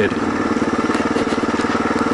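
Kawasaki KLR650's single-cylinder four-stroke engine running at a steady, even pace as the motorcycle is ridden along.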